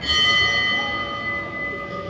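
A bell struck once, ringing with several steady overtones that slowly fade away.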